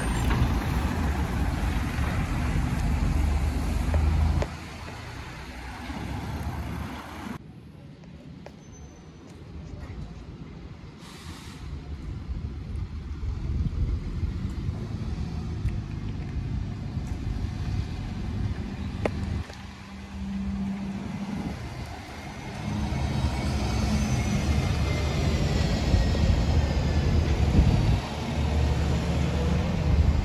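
A midi coach's diesel engine running as it drives past close by, dropping away about four seconds in. Street traffic follows, quieter, then from about 22 s a double-decker bus's engine rumble grows loud as it approaches, with a faint falling whine above it.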